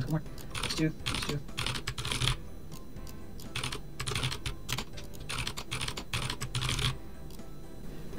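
Typing on a computer keyboard: quick runs of keystrokes in several short bursts, with brief pauses between them.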